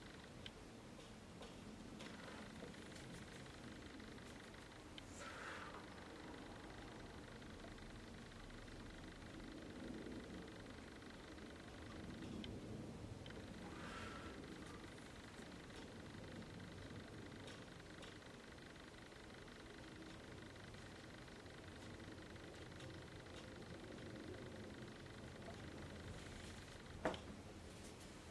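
Near silence: faint room tone with a few soft, faint clicks.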